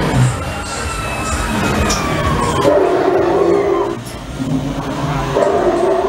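Ghost-train soundtrack of drawn-out, wordless voices sliding in pitch, with eerie music, over the rumble of the ride car moving through the dark ride.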